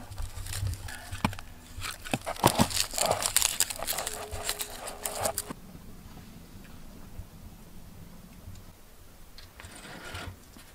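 Dry, papery garlic skins crackling and tearing as a garlic bulb is peeled by hand. It stops abruptly about five and a half seconds in, leaving only a faint low steady background.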